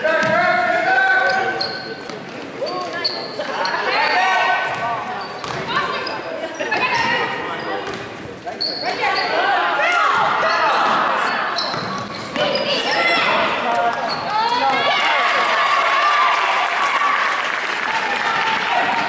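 Basketball dribbled on a hardwood gym floor during a youth game, with players and spectators shouting over it, all in a large, echoing gymnasium.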